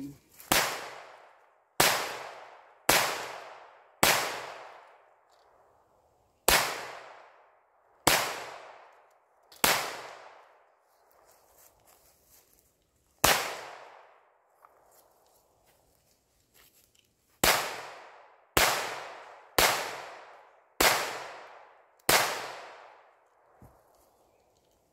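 Thirteen pistol shots fired one at a time, in runs about a second apart with longer pauses of two to four seconds between them. Each crack is followed by about a second of echo dying away.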